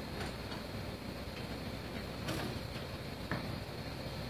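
John Deere utility tractor's diesel engine idling steadily, with a few light clicks over it.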